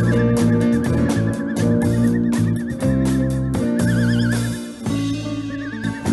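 Live rock band playing an instrumental passage: electric guitars and bass guitar over a drum kit, with a high lead line wavering in pitch.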